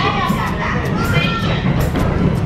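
High-pitched voices calling out in two short bursts, near the start and about a second in, over a steady low rumble.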